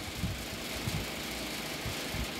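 A low, steady rumble under a faint even hiss.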